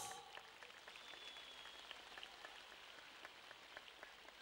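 Faint, sparse applause from a large audience in a big hall: scattered claps in an irregular patter.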